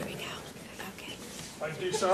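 Low, quiet voices and murmured talk in a hall, with no one speaking up clearly.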